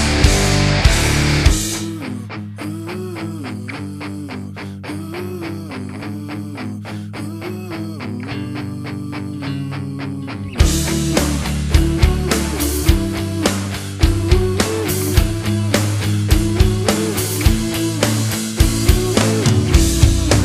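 Rock recording in an instrumental stretch. The full band drops away after about a second and a half to a quieter passage of a repeating melodic line over held low notes. About halfway through, drums and the full band crash back in loud.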